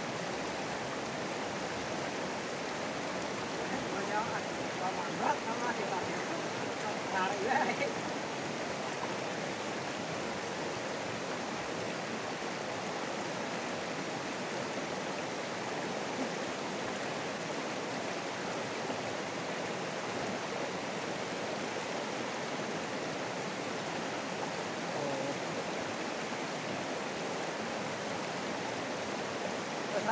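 Shallow, rocky river rushing over stones: a steady water noise. Faint voices break in a few times between about four and eight seconds in.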